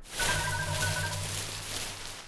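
Cartoon sound effect of a small tree being shaken, a dense rustle of leaves lasting about two seconds, over a short musical cue of a few held notes.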